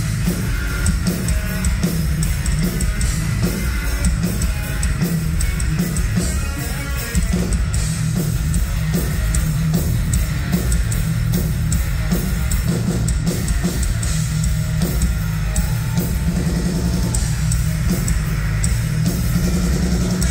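Live heavy metal band playing an instrumental passage, loud and steady: electric guitars, bass guitar and a Pearl drum kit, with no vocals.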